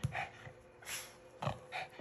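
Small shaggy dog panting quickly with its tongue out, short breaths about two or three a second, with one short low sound about one and a half seconds in.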